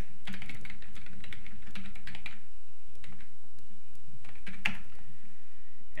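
Typing on a computer keyboard to enter a username and password: a quick run of keystrokes for about two seconds, then a few separate clicks.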